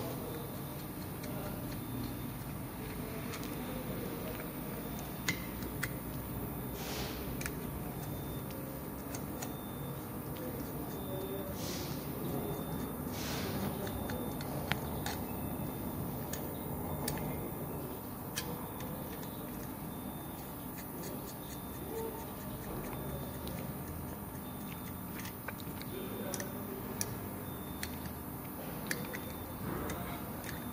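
Light metallic clicks, taps and a few short scrapes from hand tools and small metal parts as the valve housing of a clutch booster is dismantled on a bench, over a steady background hum.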